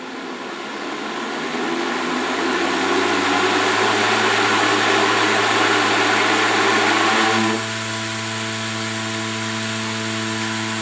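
Ventry 1.5 hp electric positive-pressure fan spinning up to full speed with a solid shroud wrapped around its propeller: a loud, rushing noise as the shrouded propeller is starved of air. About seven and a half seconds in, the shroud comes off and the fan drops to a quieter, steadier hum.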